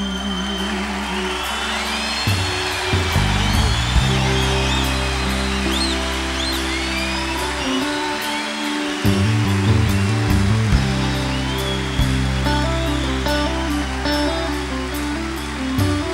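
Live rock band playing the wordless instrumental passage of a slow ballad: bass notes and drums with evenly spaced cymbal ticks, and sliding electric guitar lines over them.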